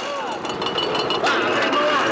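Sugarcane juice press running, a fast, even mechanical clatter, with voices talking over it.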